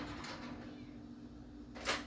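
A wooden kitchen drawer slid open, then a single sharp clink of metal cutlery near the end, over a steady low hum.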